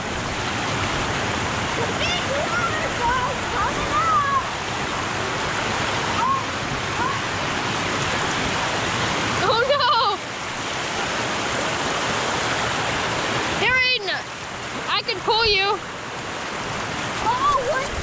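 Shallow water rushing steadily down a sandstone rock slide, a continuous wash of noise. Short wordless vocal shouts break through a few times, loudest about ten and fourteen seconds in.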